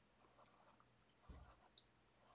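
Near silence, with faint scratching of a felt-tip marker drawn along lines on paper, a soft knock about a second in and a short click shortly after.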